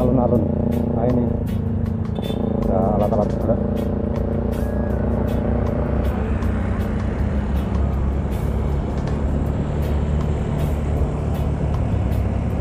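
A motorcycle running steadily on the move, with engine and road noise, under background music with a singing voice; the music drops away about six seconds in, leaving the motorcycle's ride noise.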